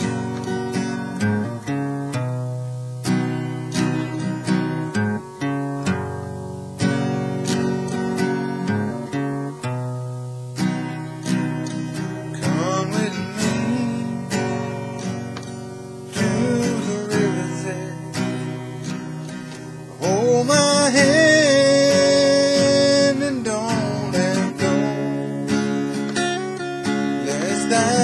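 Acoustic guitar strummed in a steady rhythm as a song's introduction, then a man's singing voice comes in over it about halfway through, loudest for a few seconds about three-quarters of the way in.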